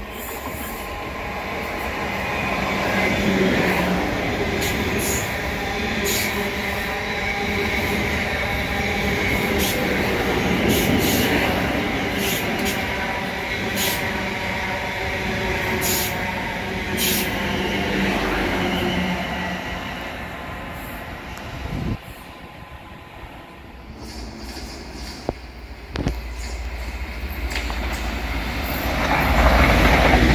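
Electric multiple-unit passenger train running through a station at speed: a steady rush of wheels on rail with several held whining tones and repeated sharp clicks, fading about twenty seconds in. A low rumble builds again near the end.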